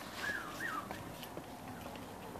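Two short, high whining calls from an animal in the first second, the second rising and then falling in pitch.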